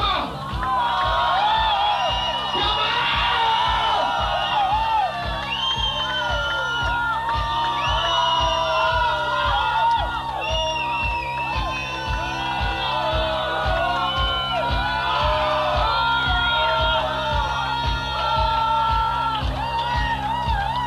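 Loud music with a steady beat over held low bass notes, with a crowd shouting and whooping over it.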